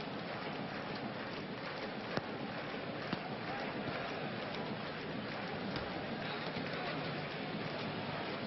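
Steady background noise of a football stadium crowd during play, with two short sharp knocks about two and three seconds in.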